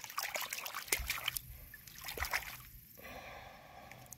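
A hand swishing a stone arrowhead in shallow water to wash the clay off it: splashing and trickling, busiest in the first second and a half, then quieter.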